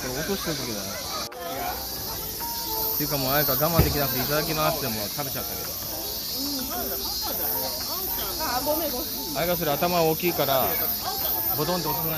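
Indistinct voices talking over a steady high-pitched hiss.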